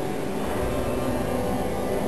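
Pipe organ playing, its chord of many steady tones held on without a break.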